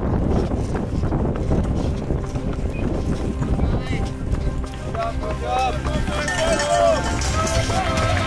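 Mountain bikes rolling over a gravel road, heard as a steady low rumble with small clicks and crunches. From about five seconds in, shouting voices join, with background music underneath.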